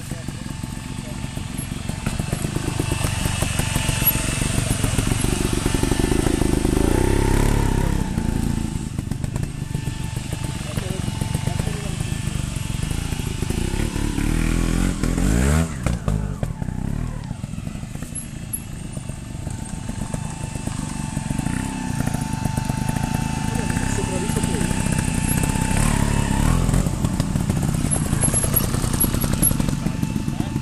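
Trials motorcycle engine running close by at low revs, with the revs rising and falling once around the middle.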